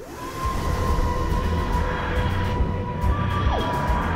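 Channel intro music for an opening logo animation: a loud, dense rushing swell with held steady tones over deep bass, and a single falling glide near the end.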